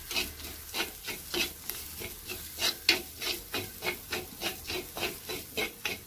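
Metal spoon scraping and stirring cabbage thoran around an unglazed clay pot, in quick, even strokes about three a second.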